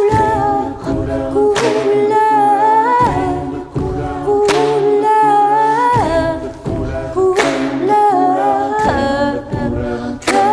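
A cappella choir of mixed voices singing wordless sustained chords over a low bass voice, with no instruments. The chords shift about every one and a half seconds, each change marked by a short noisy accent.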